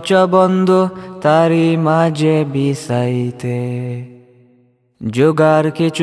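Male vocals singing a Bengali nasheed in layered harmony, with long held notes. The phrase fades out about four seconds in, there is a brief silence, and the singing starts again about a second later.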